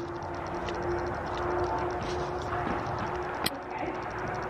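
Footsteps of a person walking on soft dirt arena footing and stepping over a tractor tyre, with a steady low hum underneath. A sharper click comes a little before the end.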